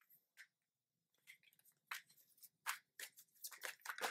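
Tarot cards being shuffled and handled: a run of quick flicks and light slaps of card against card. It starts about a second in and grows busier toward the end.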